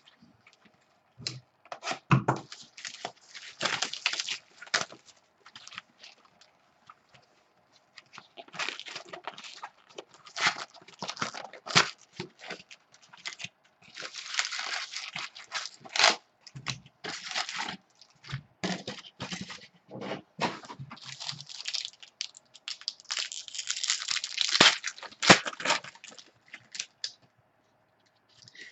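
Cellophane shrink-wrap crinkling and tearing off a box of Topps Chrome baseball cards, then the foil card packs being ripped open: irregular bursts of crackling and tearing with a short lull early on.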